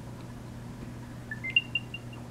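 Short electronic chime during AirTag setup: a few quick beeps stepping up in pitch, then several repeats of one higher note, near the end. It sounds as the AirTag is registered to the phone.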